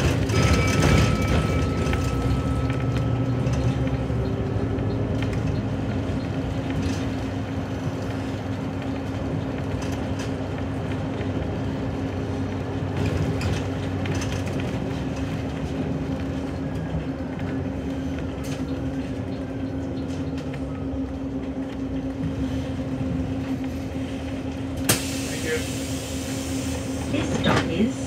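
Steady drive noise inside a city bus in motion: a constant hum and low rumble from the bus's drivetrain and road. About three seconds before the end comes a short burst of hiss as the bus nears its stop.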